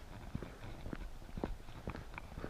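Walking footsteps on wet asphalt, about two steps a second, over faint outdoor background noise.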